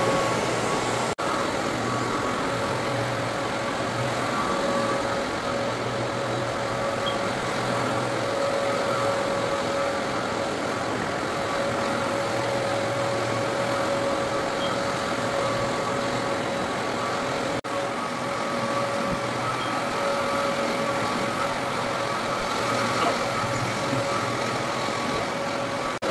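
Rotary floor buffer with a sanding screen and an attached dust-collection vacuum, running steadily while screening a red oak hardwood floor to abrade the old polyurethane before recoating. There is an even machine hum with a steady whine over it, broken by two very brief dropouts: about a second in and about two-thirds of the way through.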